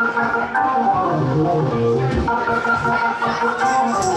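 Live gospel band music led by an organ holding sustained chords, with a bass line moving underneath and guitar.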